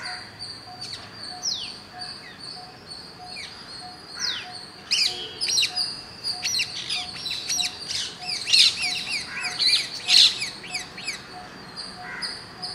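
Rose-ringed (Indian ringneck) parakeets calling: sparse at first, then a busy run of quick, shrill, downward-sliding chirps from about five seconds in, loudest near the end.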